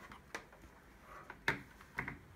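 A few soft, short clicks against a quiet room, the sharpest about three-quarters of the way in.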